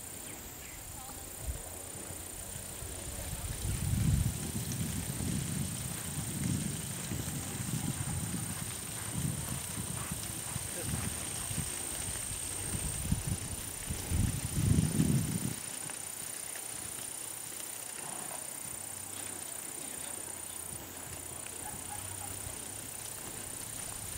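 Horse's hooves thudding dully on arena sand as the mare moves through the course, an uneven run of low thuds that fades out about two-thirds of the way through.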